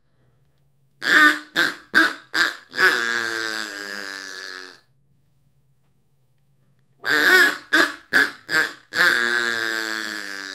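An AI-generated voice making duck-like quacking calls in two phrases. Each phrase is four short quacks followed by one long drawn-out quack. There is a pause of about two seconds between the phrases, with only a faint low hum under it.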